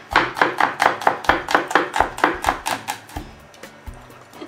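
Knife chopping a garlic clove finely, with rapid, even strokes about five a second that stop about three seconds in.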